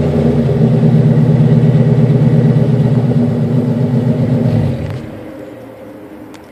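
1999 Camaro SS LS1 V8 running steadily through ARH long-tube headers and a GMMG cat-back exhaust, then falling away quickly as it stops about five seconds in.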